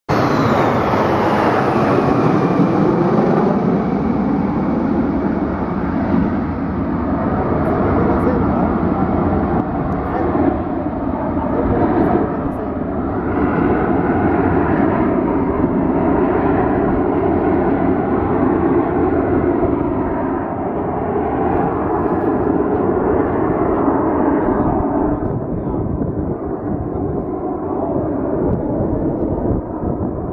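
Formation of Aermacchi MB-339 jet trainers, each with a single turbojet, flying over: a loud steady jet roar. A high whine falls in pitch over the first few seconds as the formation passes, and the roar thins a little near the end.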